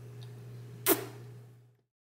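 A single sharp click about a second in, over a low steady hum; then the sound cuts off into silence.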